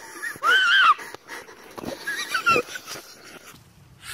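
High-pitched, wheezy human squeals in two bursts: one long loud squeal about half a second in, then a run of shorter squeals around the two-second mark.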